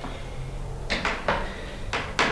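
Footsteps scuffing over bare wooden floorboards strewn with debris: three short scrapes about a second in and again near the end, over a low rumble.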